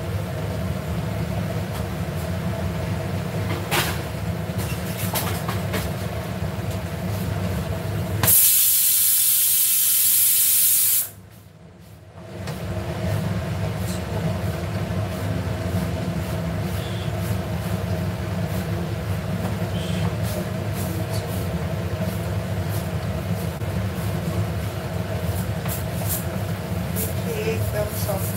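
Pressure cooker whistle: a loud hiss of escaping steam for about three seconds, starting about eight seconds in and cutting off suddenly, over a steady low hum.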